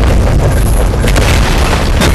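Film battle sound mix: continuous loud, deep booming with sharp impacts, one about a second in, over a music score.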